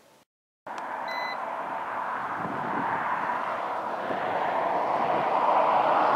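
A single short electronic beep, about a second in, from the handheld Tenmars TM-196 RF meter, over a steady rush of outdoor traffic and wind noise that grows a little louder.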